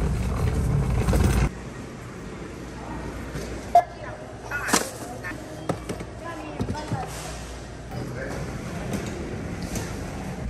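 Wheels of a ToughBuilt rolling tool bag rumbling over a hard store floor for about a second and a half, cut off suddenly. Then quieter background with scattered sharp knocks and clicks, the loudest just before four seconds in.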